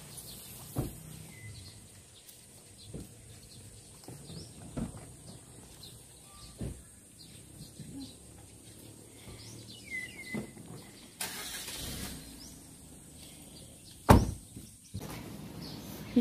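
Quiet outdoor ambience with a few short bird chirps, soft knocks every couple of seconds, a brief burst of hiss about eleven seconds in and a sharp loud knock near the end.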